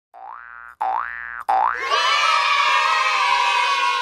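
Cartoon intro-jingle sound effects: three quick boings, each rising in pitch, a little under a second apart, then a long held sound that sinks slightly in pitch as it fades.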